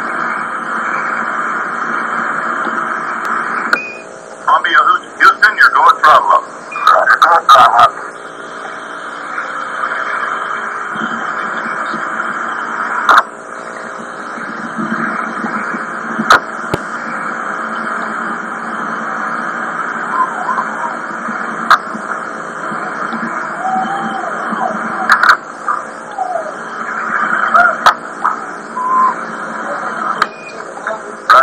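Launch broadcast audio of the first Space Shuttle flight, heard through a TV speaker and recorded on cassette tape. It is a steady hiss of radio-link static, broken by a burst of loud crackles a few seconds in, scattered clicks, and brief unintelligible voice fragments.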